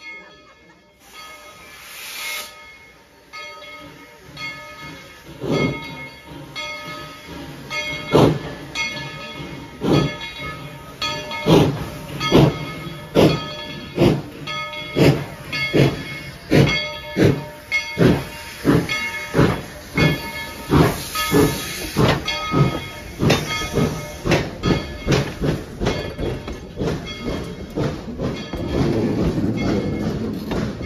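Narrow-gauge 4-6-0 steam locomotive No. 190 working a passenger train past at low speed. Its exhaust chuffs are evenly spaced, at first a little over one a second, growing louder and then slightly quicker, with steam hissing from the cylinder cocks. Near the end the passenger cars roll by with a rushing rumble.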